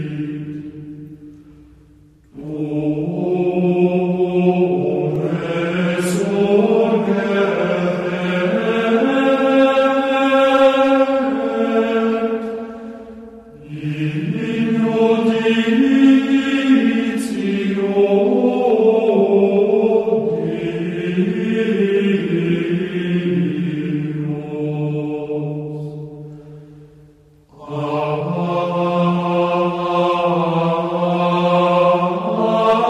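Gregorian chant: low voices sing long, slow, held phrases. Each phrase swells and then fades away, and new phrases begin about 2, 14 and 28 seconds in.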